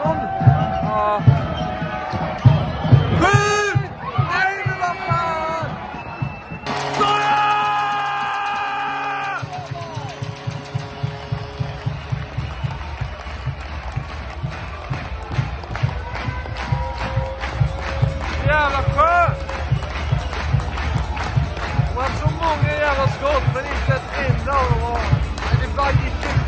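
Arena PA music with a steady thumping beat. A voice over the speakers comes first, a loud held chord cuts in suddenly about seven seconds in, and sung or spoken melodic lines run over the beat later on.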